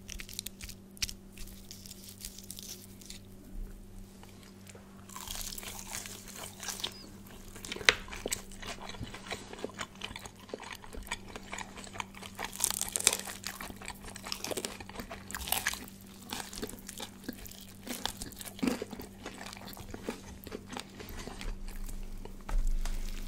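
Two people biting and chewing crispy KFC fried chicken close to a microphone: irregular crunches of the breading with chewing between, the sharpest crunch about eight seconds in.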